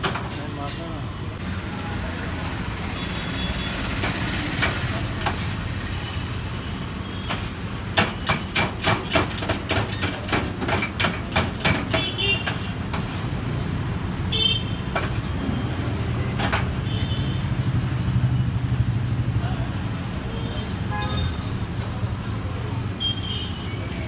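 A run of quick, even knocks from chopping shaved shawarma chicken at a steel counter, about three strikes a second for some four seconds near the middle, over a steady low hum of traffic and background voices.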